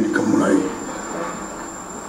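A man speaking into microphones, his voice dropping off after about half a second into a pause filled with steady room noise.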